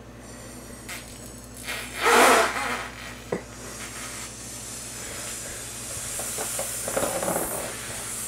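A man blowing up a latex balloon by mouth, hard work: a loud rush of breath about two seconds in, a short click, then a long steady rush of air into the balloon that slowly grows louder as it fills.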